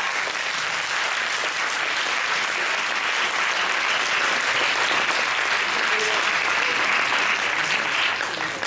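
Audience applauding: a steady, sustained round of clapping.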